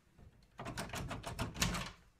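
A thin metal slip tool clicking and rattling against a door latch and its protective latch plate, a rapid run of clicks several a second starting about half a second in: the latch being slipped despite the guard plate.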